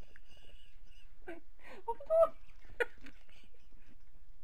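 A small dog gnawing on a chew bone: scattered short clicks and scrapes, with a brief whining vocal sound about two seconds in.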